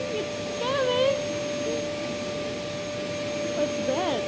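Canister vacuum cleaner running with a steady motor whine while its floor head is pushed over a shag rug.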